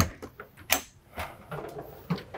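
Travel trailer entry door being unlatched and pulled open: a sharp latch click, then a knock under a second later and a lighter one after it.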